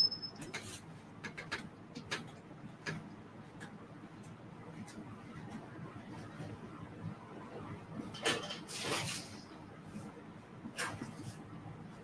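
A high, steady microphone feedback whistle cuts off just after the start. Then comes faint room sound with scattered light knocks and clicks, and two brief rustling noises about eight and eleven seconds in, from things being handled across the room.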